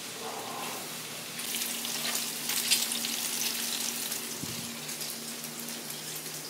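Food sizzling and crackling in a frying pan on a gas stove, the sizzle growing stronger after about a second and a half. A faint steady hum runs underneath, and there is a soft thump about four and a half seconds in.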